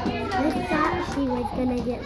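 Several young children's voices chattering at once in a classroom, none of it clear words.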